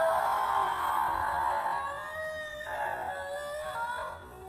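A woman wailing loudly in anguish: one long high cry that starts suddenly, then a second cry after nearly three seconds.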